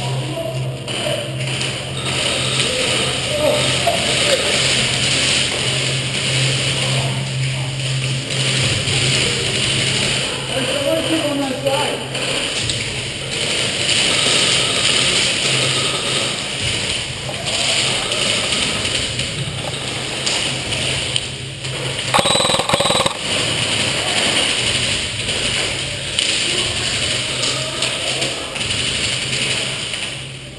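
Indistinct background voices over a steady low hum in a large room, with a brief louder sound about 22 seconds in.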